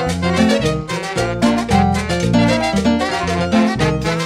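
A live dance band playing upbeat Latin dance music, with horns over electric bass and drums keeping a steady beat.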